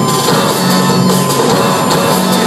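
A live rock band playing loudly with drums and electric guitar, heard from the audience in a large hall. This is an instrumental stretch with no singing.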